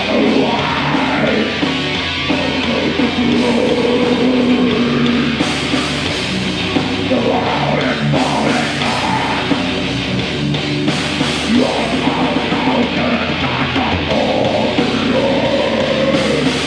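Heavy metal band playing live: distorted electric guitars and a drum kit, with a vocalist singing into a microphone over them.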